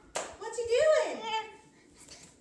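A sharp clap-like knock, then a high-pitched, wordless vocal cry from a young child or a woman that rises and then slides down in pitch, lasting about a second.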